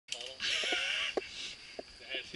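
Voices of mountain bikers calling out on the trail, with a short burst of hiss near the start and a few sharp clicks and knocks from the bikes rolling over dirt.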